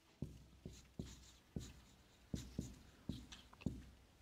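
Marker writing on a whiteboard: a quick run of faint taps and scratches, about three a second, as the letters go down.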